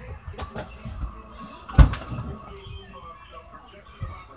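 Someone rummaging in a small refrigerator: a few light knocks, then one solid thump about two seconds in, from the fridge door or something inside being knocked.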